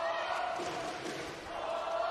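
Indoor handball arena crowd with a sustained chant from the stands, many voices holding one note that dips briefly partway through.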